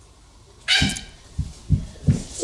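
A short, high-pitched meow from a plush toy kitty, about two-thirds of a second in, followed by a few soft thumps of footsteps on the wooden floor.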